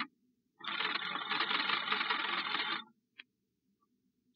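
Old party-line telephone bell ringing, a radio-drama sound effect. One ring cuts off right at the start, then a single long rattling ring of about two seconds begins about half a second in, followed by a faint click.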